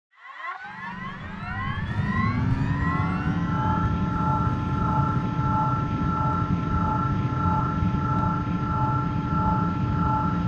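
Aircraft-engine-like sound effect: a whine rises in pitch over the first few seconds like an engine spooling up, then holds as a steady hum over a low rumble, with a gentle pulse a little under twice a second.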